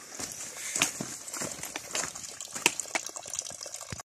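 Water from a small spring pipe trickling into a shallow rocky pool, a steady splashing hiss, with irregular footsteps clicking and crunching over loose stones.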